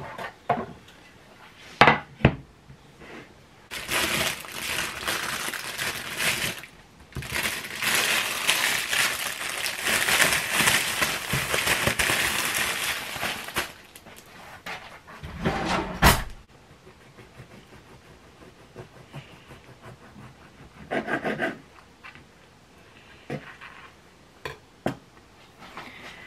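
Crackly rustling of a brown paper bag for several seconds as a seeded bread roll is taken out. It is followed by a knock and a few short scraping sounds as the roll is cut on a wooden chopping board.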